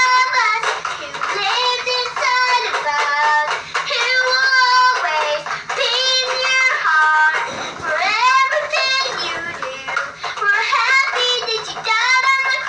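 A young girl singing a song about Jesus in phrases with short pauses, strumming a toy guitar.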